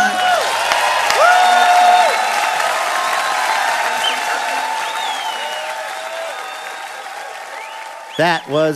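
Live audience applauding and cheering after a song, with a couple of high whoops in the first two seconds; the applause then slowly dies away.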